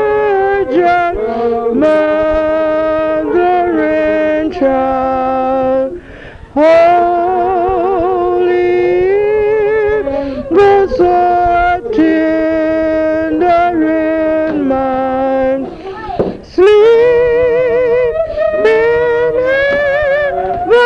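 Voices singing a slow song in long held notes with a wide, wavering vibrato. The singing breaks off briefly about six seconds in and again near sixteen seconds.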